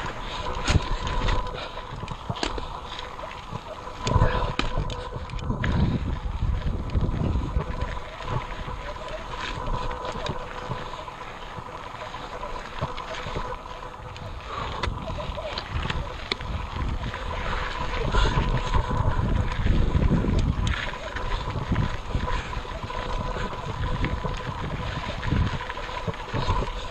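Giant Trance full-suspension mountain bike climbing over rock and dirt, its tyres and frame giving many short knocks and rattles, while wind buffets the bike-mounted camera's microphone in low rumbling gusts. A faint steady whine runs underneath.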